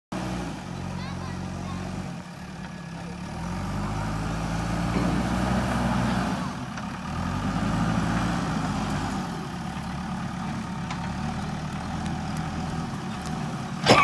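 Diesel engine of a JCB 3DX backhoe loader running under load as the machine pushes soil and bamboo with its front bucket. The engine pitch rises and falls in slow swells as it is revved.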